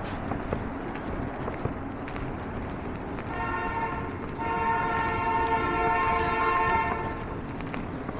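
Elevated train overhead giving a long, steady high-pitched tone of several pitches at once, starting about three seconds in and lasting about four seconds with a brief break, over steady street traffic noise.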